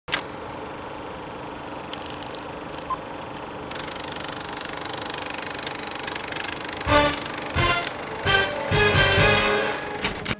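Film projector running with a fast, even mechanical rattle and the crackle of old film, opening with a sharp click; from about seven seconds, music comes in over it.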